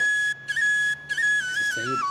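A whistled melody: one clear, high tune moving in small steps between held notes, with short breaks between phrases.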